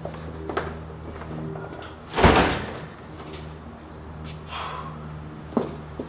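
A heavy cardboard box set down with a thud on top of a metal cart about two seconds in, with a few lighter knocks before and after, over a steady low hum.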